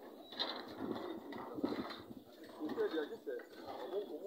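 Indistinct, muffled human voices.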